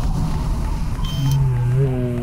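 Low, rumbling static noise of a glitch-style video transition sound effect, with a short high beep about a second in and a low held note starting soon after.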